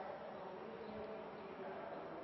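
Faint steady buzzing hum with several held tones.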